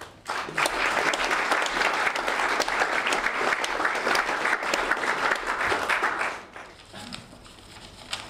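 Audience applauding for about six seconds, then dying away.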